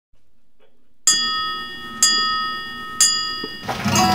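A bell struck three times, about a second apart, on the same note, each stroke ringing and fading away. Other music comes in near the end.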